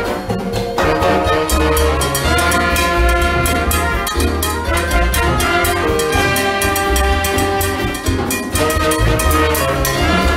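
Live small-group jazz: two trumpets and a saxophone playing together, over a low bass line and drums.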